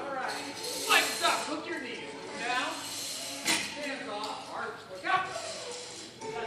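Indistinct voices calling out in a large hall.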